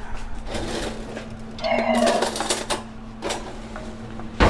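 Metal kitchen utensils clinking and clattering as a spoon is picked out from among them, in a run of quick light clicks, with a short murmur of voice about two seconds in.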